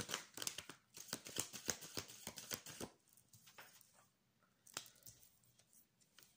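A deck of tarot cards being worked through by hand, as a card is being drawn: a quick run of crisp card clicks for about three seconds, then a few single clicks.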